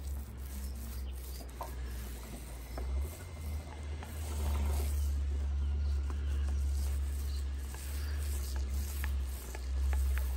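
Small paint roller being rolled back and forth through wet paint on the boat's fibreglass surface, a soft sticky rolling sound, over a steady low rumble.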